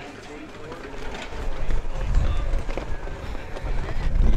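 Wind buffeting the microphone: a low, rumbling noise that grows stronger about halfway through, under faint background voices.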